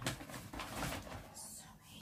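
Paper shopping bag rustling and crinkling as a hand rummages through the items inside it.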